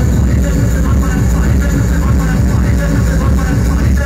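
Hardcore techno played loud over a club sound system: a fast, steady kick-drum beat with heavy, distorted bass.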